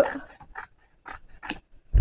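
Scissors cutting through a thin cardboard cereal box: a few short, separate snips and rustles, with a dull bump near the end as the box is handled.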